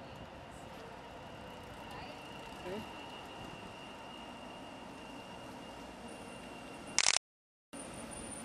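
Street background noise as a light rail train approaches, with a faint steady high whine. A short vocal sound comes about two and a half seconds in, and near the end a loud brief crackle is followed by a half-second dropout of all sound.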